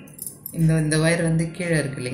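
A woman's voice speaking from about half a second in, over light clinking and rattling from hands working stiff plastic wire strands into a basket weave.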